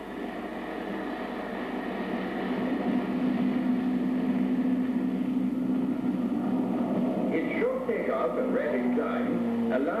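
Shorts Seamew's Armstrong Siddeley Mamba turboprop engine running at takeoff power, a steady drone with one held tone that grows louder over the first few seconds as the aircraft takes off.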